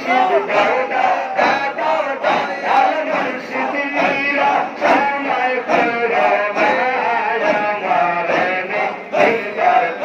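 Sufi zikir chanted by many men's voices together, led over microphones and a sound system, with the crowd joining in a loud, rhythmic pulse.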